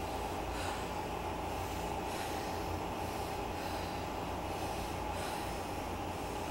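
A person breathing hard and rhythmically while working out on an elliptical trainer, a breath about every one and a half seconds, over a steady low hum.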